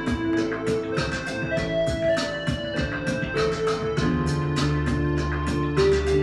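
Electronic keyboard played with an organ-like sound: held notes and chords that change every second or so over a steady drum beat of about four hits a second.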